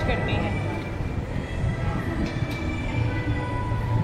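Indoor food-court ambience: a steady low hum with faint background voices and no nearby speech.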